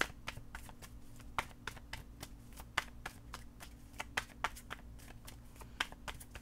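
A tarot deck being shuffled by hand: an irregular run of soft card clicks and taps.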